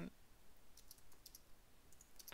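Faint clicks of computer keyboard keys being typed: a few keystrokes about a second in, then another near the end, with near silence between.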